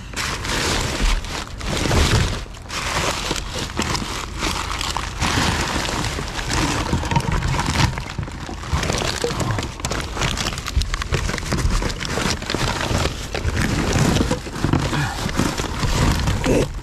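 Gloved hands rummaging through rubbish in a dumpster: plastic bags and wrap crinkling and rustling, with frequent irregular knocks and clatter as bottles and boxes are shifted.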